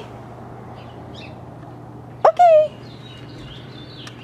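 Small birds chirping faintly over a steady low hum. About two seconds in comes one short, loud, high-pitched vocal call that sweeps sharply up and then holds.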